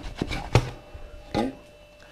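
A few sharp knocks and clunks, the loudest about half a second in, as the metal bread-machine pan is gripped through a towel and worked out of the machine.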